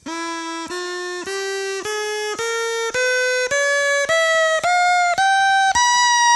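Drinking-straw reed pipe (a straw pinched and cut to a V to make a double reed) blown in a buzzy, reedy tone, broken about twice a second as the straw is cut shorter, so the pitch climbs in about eleven even steps to roughly three times its starting pitch. Each shortening of the straw's air column raises the pitch of its standing wave.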